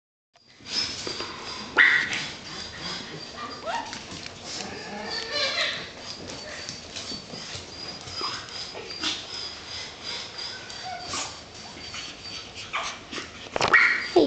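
Young puppies whimpering and yipping in short, scattered high cries, some rising or falling in pitch, with a few sharp clicks in between.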